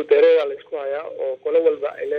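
A person speaking continuously, the voice cut off above about 4 kHz.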